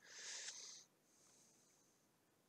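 A short breath, a hissy exhale lasting under a second, followed by a fainter, thinner hiss that fades out; otherwise near silence.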